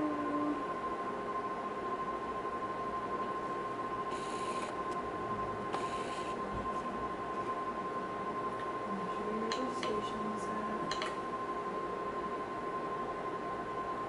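Quiet small-room tone with a steady high-pitched electronic whine, broken by a couple of soft rustles and a few light clicks in the second half.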